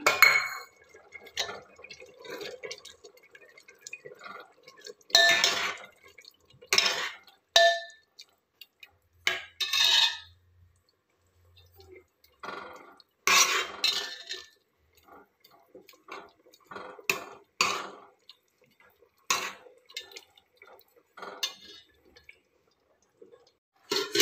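A steel ladle knocking and scraping against a large steel cooking pot as a curry is stirred: a dozen or so scattered sharp clinks with quiet gaps between them.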